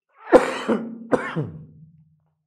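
A man coughing and clearing his throat, two short bursts about a second apart, the first the louder.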